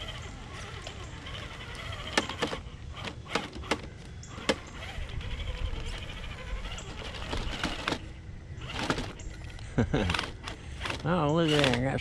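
Traxxas TRX-4 RC crawler on Traxx tracks crawling over rocks: a faint steady electric whine with scattered sharp clicks and knocks as the tracks and chassis bump against the stones. A man's voice comes in near the end.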